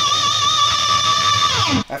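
Electric guitar, an ESP LTD MH-401FR, sustaining one high bent note at the 15th fret with a slight wavering vibrato. Near the end the pitch drops steeply and the note cuts off.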